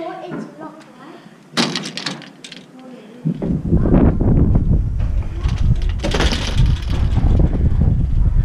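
A screen door slid open about a second and a half in. From about three seconds on, wind buffets the microphone outdoors as a loud, steady low rumble.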